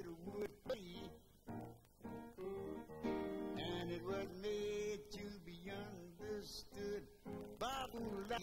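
A blues song's instrumental passage between sung lines, led by guitar.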